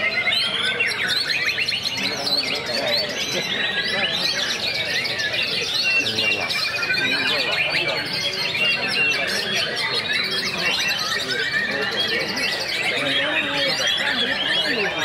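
Several white-rumped shamas (murai batu) singing at once in a contest round: a dense, unbroken tangle of overlapping whistles, trills and chirps, with voices murmuring underneath.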